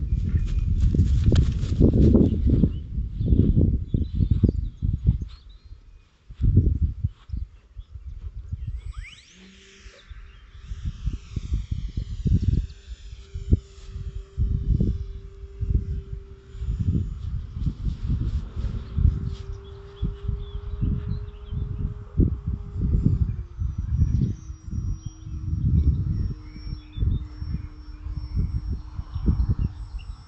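Wind buffeting the microphone in irregular low rumbling gusts, over the distant steady drone of the climbing glider's brushless motor and 8x4 folding propeller. The prop drone settles into one even tone about ten seconds in and drops a step in pitch about two-thirds of the way through.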